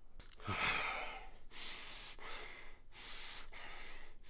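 A man breathing heavily: one loud, gasping breath with a bit of voice about half a second in, followed by a run of rasping breaths roughly every three quarters of a second.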